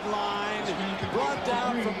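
A man's voice in television sports commentary, with no other sound standing out.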